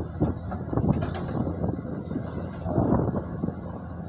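A Komatsu PC210 hydraulic excavator's diesel engine running steadily as the machine shapes an earth embankment with its bucket. Uneven louder noisy bursts come over the rumble, strongest about half a second to a second in and again around three seconds in.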